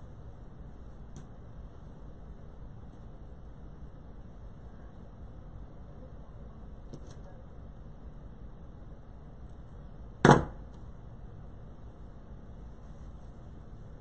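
Handling of craft materials on a worktable: a few faint clicks and one sharp knock about ten seconds in, over a steady low hum.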